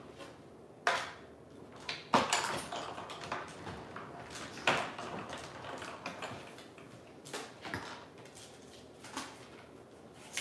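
Die-cutting work: cutting plates and thin metal dies being handled and run through a die-cutting machine, a series of sharp, irregular clacks with a stretch of rattling clatter about two seconds in.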